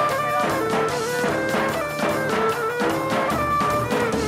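Live Cretan folk dance music, a pentozali: a bowed Cretan lyra plays an ornamented melody over steady beats of a daouli bass drum, with keyboard accompaniment.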